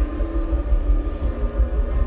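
Live electronic rock music at a concert: a deep, pulsing bass rumble under sustained synthesizer tones, with no vocals.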